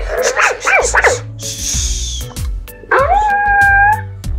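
Interactive plush toy pet playing electronic puppy sounds through its small speaker: a run of quick yips for about a second, a short hiss about halfway, then one long howl near the end.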